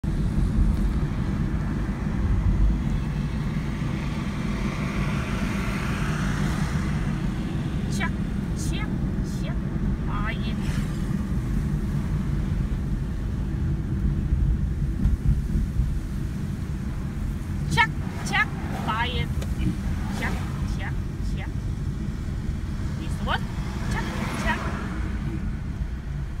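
Steady low rumble of a car's engine and tyres heard from inside the cabin while driving, with a few brief snatches of voices.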